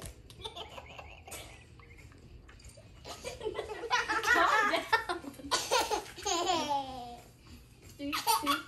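Children laughing: after a quieter stretch, a long, loud, wavering laugh starts about three seconds in, and a second laugh falling in pitch follows about two seconds later.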